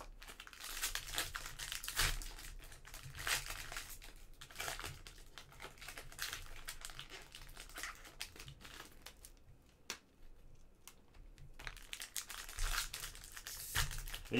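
Foil wrappers of Panini Mosaic soccer card packs crinkling and tearing as they are opened and handled, in irregular bursts with a brief lull about ten seconds in.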